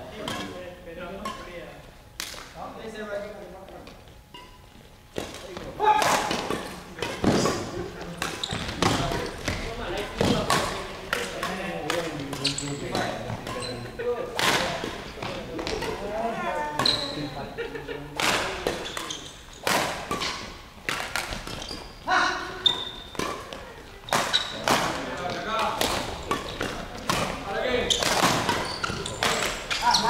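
Badminton rackets striking shuttlecocks and players' shoes thumping on the court floor, many separate sharp hits and thuds through the whole stretch, with voices calling around a large indoor hall.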